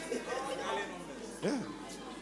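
Scattered congregation voices murmuring and responding, softer than the preaching, with one short louder voice about one and a half seconds in and faint music underneath.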